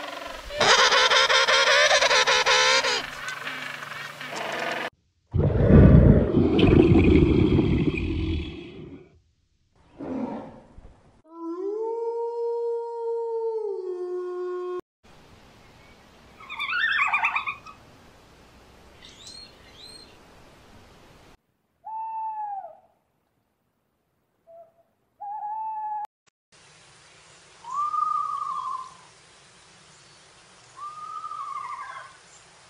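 A run of different animal calls cut one after another. First king penguins calling with a long, wavering, pitched call, then a loud, low, rough call, a held tone that steps down, a burst of high chirps, and several short arching calls near the end.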